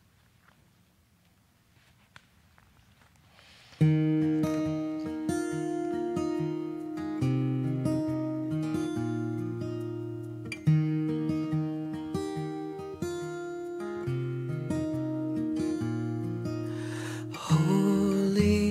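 Near silence, then quiet instrumental music on acoustic guitar begins suddenly about four seconds in: slow held notes over a bass line, with the chords changing every couple of seconds.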